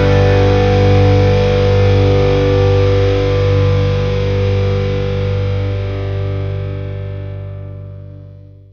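Rock music: a distorted electric guitar chord held and ringing out, fading away over the last few seconds.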